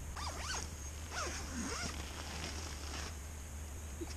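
Tent door zipper being pulled in two drawn-out strokes, its rasp rising and falling in pitch with the speed of the pull.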